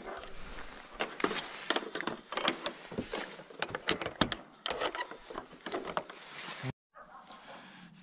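Padlock and metal hasp clinking and rattling as a metal door is pushed shut and locked again: a string of sharp metallic clicks that stops abruptly near the end.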